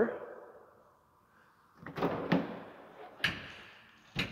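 Latches and hardware at the back of a pickup truck's bed clunking as the bed is opened: a couple of sharp clicks and knocks about two seconds in, and another clunk a little over a second later, echoing in a large room.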